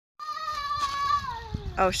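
A one-month-old KWPN foal whinnying: one long, high-pitched call that holds its pitch for about a second, then slides down toward the end.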